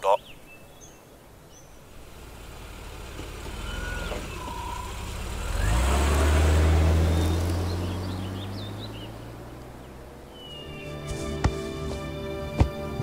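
A car driving past close by: engine and tyre noise building for several seconds, loudest about six seconds in, then fading away, with a few faint bird chirps. Music comes in near the end.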